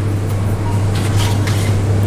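A steady low hum with faint light knocks and rustles past the middle as a foil-covered baking tray is handled at an oven.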